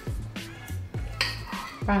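Background music with a steady low bass line, and a few light clinks of cutlery against plates.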